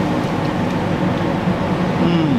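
A train passing on the railway line, a steady noise with a low, wavering hum.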